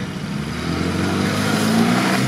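UAZ off-roader's engine revving under load, its pitch and loudness climbing steadily as it drives into a muddy pond. Water splashing builds in towards the end.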